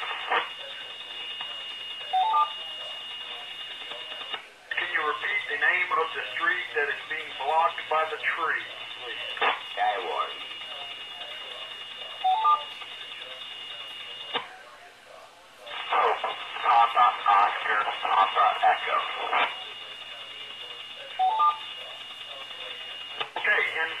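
Amateur radio voice transmissions heard through a radio's speaker, narrowband and muffled, broken by short gaps of hiss. Short two-note beeps, rising in pitch, sound three times, roughly every nine to ten seconds.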